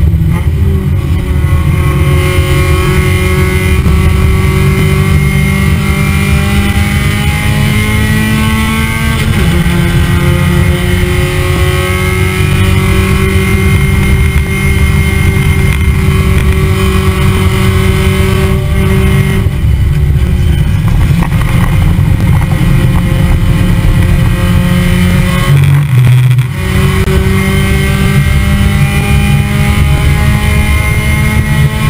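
Spec Miata race car's four-cylinder engine running hard, its note slowly rising in pitch as it accelerates, with brief breaks in the note about 9, 19 and 26 seconds in.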